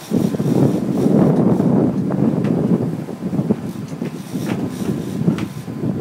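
Wind buffeting the phone's microphone on an open sportfishing boat, a loud uneven rumble that swells and dips, with boat and sea noise beneath and a few faint clicks.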